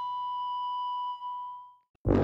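A single struck chime ringing out: one steady high tone with fainter overtones above it, slowly fading and dying away just before the end.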